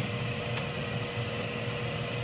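Steady room tone of a crowded hall heard through a microphone: an even hiss with a faint constant hum, and one faint tick about half a second in.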